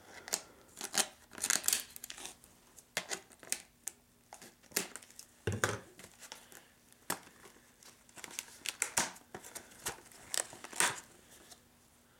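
A stiff clear plastic clamshell blister pack being cut open with scissors and pulled apart by hand: irregular sharp snips, cracks and crinkles of the plastic, with short pauses between them.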